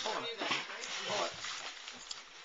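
Indistinct voices of children and adults, with wrapping paper crinkling and tearing as a present is unwrapped.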